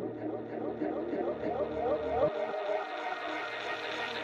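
Hip-hop track played backwards: warped, gliding reversed vocal sounds over a low bass line that cuts off abruptly a little over two seconds in.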